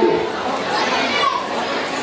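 Audience chatter in a large hall: many voices of adults and children talking and calling out at once.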